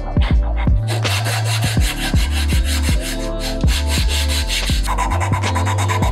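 A round rasp scraping in repeated strokes across a cedar mallet handle. Under it runs electronic background music with a steady kick-drum beat and deep bass.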